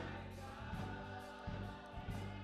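Gospel choir singing over a band, with a sustained low bass and occasional drum hits.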